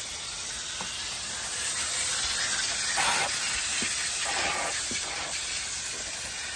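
Water from a garden hose spraying through an air-conditioner condenser coil from inside, jets hissing out between the fins onto the grass. A steady hiss that swells louder a couple of times.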